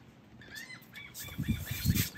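Birds calling over and over in short, arched cries, over wind rushing across the microphone, with low buffeting gusts near the end.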